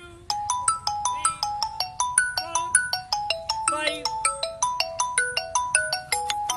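Mobile phone ringtone playing loudly: a fast melodic tune of bright, tinkling notes, starting a moment in.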